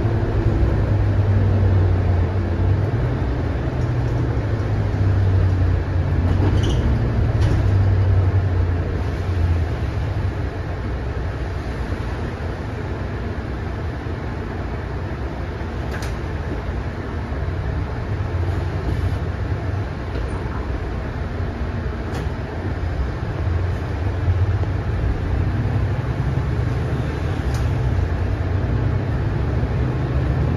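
Cabin sound of a Mercedes-Benz O530 Citaro single-deck city bus on the move: a low diesel engine drone over road noise, heavier for the first several seconds and again near the end, easing off in the middle. A few short sharp clicks from the bus body.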